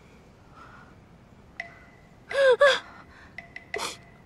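A young woman's voice: two short, loud cries falling in pitch about two seconds in, then a sharp intake of breath near the end as she starts to wail. A faint thin high tone rings under it.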